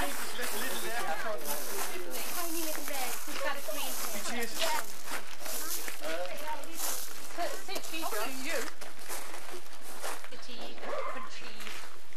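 Indistinct chatter of a group of adults and children talking over one another, with no single clear voice.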